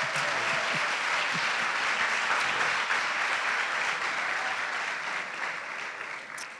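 Audience applauding steadily, beginning to die down near the end.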